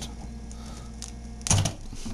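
Wire strippers closing on a 14-gauge insulated copper wire, with a short sharp snap of clicks about one and a half seconds in, over a low steady hum.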